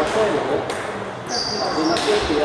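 Table tennis balls clicking on tables and bats at several tables in a large echoing sports hall, over a murmur of voices. A brief high-pitched steady tone sounds near the end.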